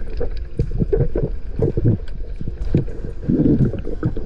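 Muffled underwater noise picked up through a camera housing. Irregular low rumbling and short knocks of water movement and handling as a speared fish is pulled in on the spear line.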